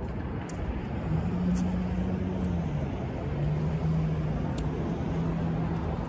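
A steady engine drone on a single low pitch comes in about a second in and dips slightly in pitch, running over constant outdoor noise.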